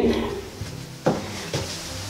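One sharp knock about a second in, as a metal pop-up sink drain is dropped into the basin's drain hole, with faint handling noise around it.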